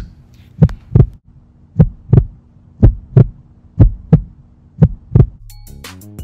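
Heartbeat sound effect: five double thumps, about one a second, over a faint low hum. Music starts near the end.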